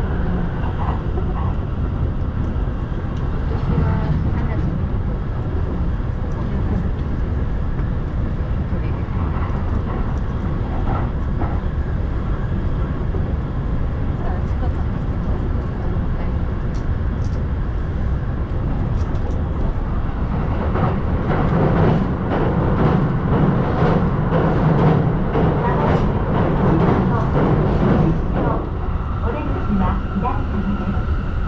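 Steady running rumble of a commuter electric train heard from inside the carriage, wheels rolling on the rails. Faint passenger voices sit underneath. Past the middle the rumble grows louder for several seconds with a rapid clattering over the track.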